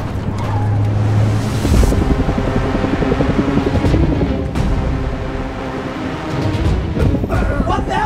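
Tense action film score with a driving, pulsing rhythm that kicks in about two seconds in, over a low steady vehicle engine rumble.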